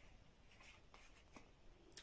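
Near silence: room tone with a few faint soft ticks and rustles.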